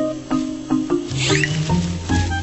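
Background music with a steady beat and repeating notes. About a second in, a brief high squeak rises over it.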